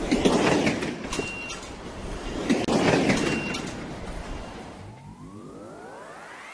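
Intro sound effects: three loud rushing whooshes about a second and a half apart, each carrying a brief high beep, then a rising multi-tone sweep that builds near the end.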